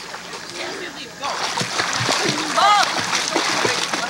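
Pool water splashing and churning as a small child in inflatable arm bands swims and kicks at the surface.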